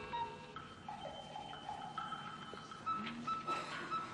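Soft game-show background music of held notes, playing under a timed answer round's countdown.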